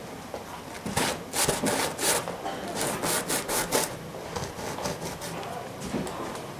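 A series of rough scraping strokes: one run of several strokes about a second in and another about three seconds in.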